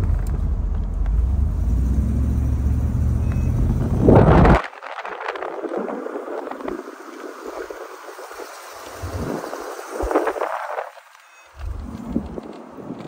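1998 Bentley Azure convertible driving slowly, with wind rumbling heavily on the microphone for the first four seconds or so, ending in a loud gust. After that the rumble drops away and a quieter rushing road-and-wind noise remains, swelling once more near the end.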